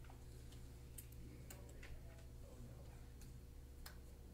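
Faint, scattered short clicks and taps, irregularly spaced, over a steady low hum of room tone in a quiet classroom.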